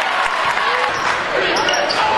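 A basketball bouncing on a gym court amid a steady din of voices in a large hall.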